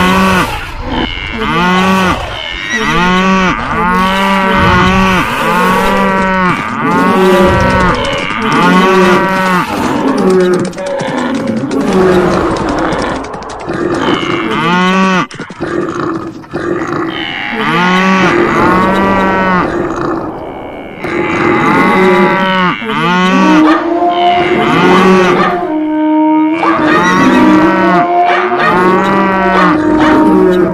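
Stampeding herd's animal calls: many loud, arching moo-like cries overlapping and following one another in quick succession, with brief lulls.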